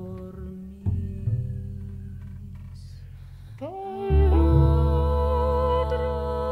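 Slow live chamber-jazz ensemble music of voices, reeds, strings, piano and percussion: low sustained notes with a soft attack about a second in. About four seconds in, voices hum or sing wordlessly, sliding up into held notes with vibrato over a louder low drone.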